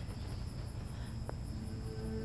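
Crickets chirping at night in a fast, steady pulsing rhythm, over a low hum. Soft sustained music comes in near the end.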